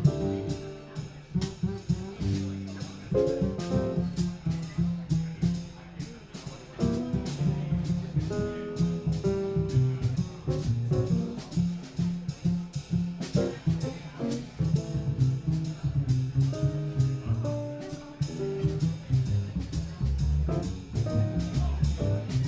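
Live jazz piano trio playing at a swing tempo: double bass plucked in a moving low line, piano chords above it, and a drum kit keeping time with steady, even cymbal strokes.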